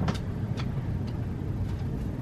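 Steady low outdoor rumble with a few faint, brief clicks.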